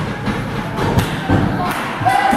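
A few thuds on the wrestling ring's mat as the wrestlers move about, the sharpest about a second in, with voices in the background.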